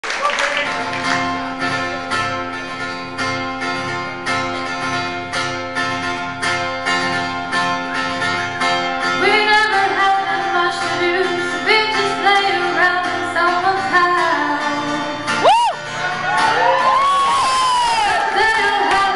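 Acoustic guitar strummed in a steady rhythm, played live in a large hall, with singing coming in about halfway through. Shortly before the end, one brief, loud, rising swoop stands out above the music.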